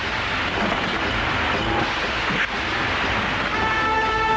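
Loud, steady rushing noise on the film soundtrack, with background music coming back in near the end.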